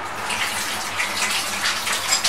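Steady rushing of running water.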